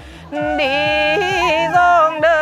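A woman singing a Mường folk greeting song (hát Mường) with wavering, sliding ornaments on long held notes, accompanied by a side-blown flute. The sound dips briefly at the start for a breath, and the voice comes back in about a third of a second in.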